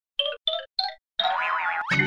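Cartoon logo jingle: four short notes, each a step higher than the last, about a quarter second apart. About halfway through, a longer sound effect with sliding, warbling pitches follows.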